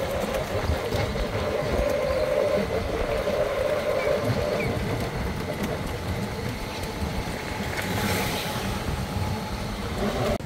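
Golf-cart-style resort buggy driving along a paved path: a steady whine from its motor that fades out about halfway, over a continuous low rumble of the ride.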